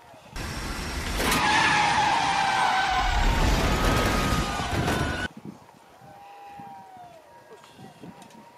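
A loud burst of movie soundtrack, about five seconds long, that starts abruptly and cuts off suddenly. It is a heavy rushing roar with a rumble underneath and several high, drawn-out shrieks over it: an airliner cabin in turmoil.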